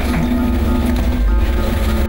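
A loud edited-in music cue or sound-effect sting: a dense noisy swell over a deep rumble and a held low tone. It starts abruptly and cuts off suddenly after about two seconds.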